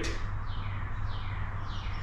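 Faint, repeated downward-gliding chirps, typical of a bird singing, about two a second, over a steady low hum.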